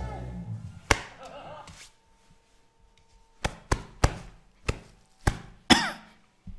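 A series of sharp clicks at a computer desk: about six separate clicks in the last two and a half seconds, with an earlier single click about a second in. At the start, the tail of a singing clip fades out.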